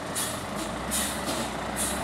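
Steady background noise with a low hum and a hiss that swells and fades several times.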